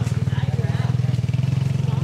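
A small motorbike engine idling steadily close by, with a fast, even pulsing beat.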